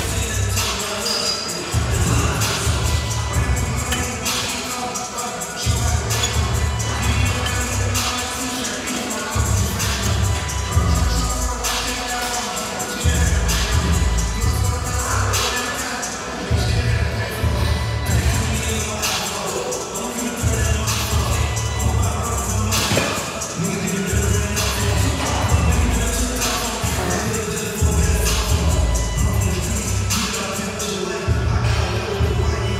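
Background music with a steady beat and heavy bass that drops in and out every few seconds.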